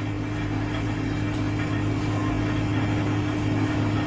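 A steady low hum with a constant pitch, holding at an even level.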